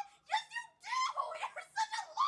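A young woman's high-pitched, squealing laughter in a run of short bursts.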